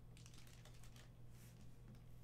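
Near silence: a scatter of faint light clicks and taps over a steady low hum.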